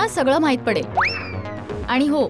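A comic sound effect in a sitcom soundtrack: a whistle-like tone shoots up quickly about a second in, then slides slowly down for about half a second. It plays over background music.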